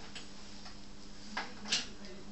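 Light clicks from a plastic coffee capsule and the raised lever of a Concerto capsule espresso machine as they are handled: a faint one just after the start and two near the end, the last the sharpest, over a steady low hum.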